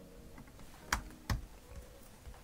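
Two keystrokes on a computer keyboard, sharp clicks about a third of a second apart near the middle, heard over faint room tone while a number is typed into a settings field.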